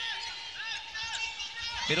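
Athletic shoes squeaking on an indoor court as players move during a volleyball rally: several short rising-and-falling squeaks over a background of arena crowd noise.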